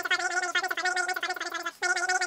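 High-pitched, rapidly warbling voice, like speech played back sped up over fast-forwarded footage, with a brief break near the end.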